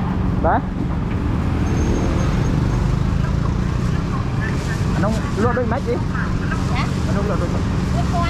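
Street-market ambience: a steady low rumble of motor traffic, with brief snatches of people's voices, the clearest about half a second in and around five to six seconds in.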